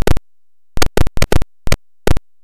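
Computer keyboard keystrokes: about six short, sharp clacks in quick, uneven succession, with dead silence between them, as text is typed.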